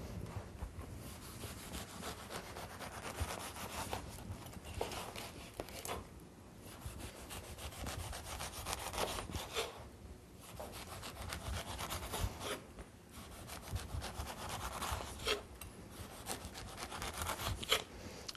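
Kitchen knife cutting segments out of a peeled pink grapefruit on a wooden cutting board: faint, repeated slicing and scraping strokes of the blade through the fruit's membranes, in several bouts with short pauses.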